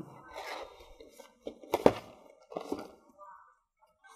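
A small cardboard box being pulled out of a tightly packed cardboard gift box: cardboard scraping and rustling against cardboard, with one sharp knock about two seconds in.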